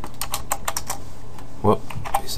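Typing on a computer keyboard: a quick run of key clicks that stops about a second and a half in.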